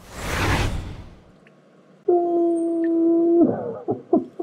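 Cartoon sound effects: a loud whooshing hit that fades over about a second, then, about two seconds in, a steady held tone that breaks into short falling glides near the end.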